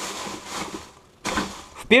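A plastic bag being crumpled and rustled by hand, dying down about a second in, then a second short rustle.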